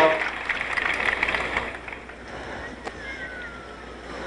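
Crowd in the stands whistling and murmuring in protest at an out call, fading after about two seconds, with one falling whistle near the end.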